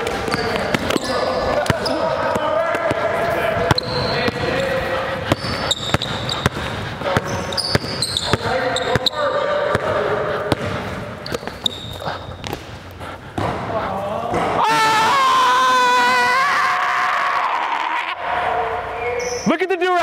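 Basketball dribbling and bouncing on an indoor gym floor, sharp repeated bounces echoing in the hall, mixed with players' voices and calls; about fifteen seconds in, a louder drawn-out voice stands out for a couple of seconds.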